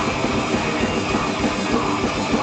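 Melodic death metal band playing live: loud, heavily distorted electric guitars over a fast, driving kick-drum pattern, dense and continuous.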